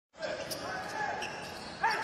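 Broadcast court sound from a basketball game in an arena with no crowd. Faint voices and a few light knocks echo in the hall, and a commentator starts speaking just before the end.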